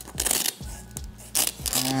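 The zipper on the back pocket of a leather camera bag being pulled closed in two short runs about a second apart, with background music underneath.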